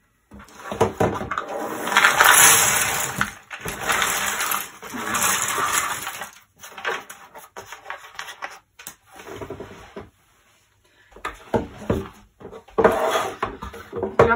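Cardboard jigsaw pieces of a 1000-piece puzzle pouring out of the box onto a table with a rushing clatter, in two long pours in the first few seconds, then sparser rustles and taps as the last pieces are tipped out.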